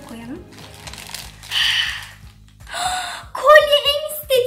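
Foil blind-bag wrapper crinkling in two short rustles as it is pulled open, over steady background music. A voice exclaims loudly near the end.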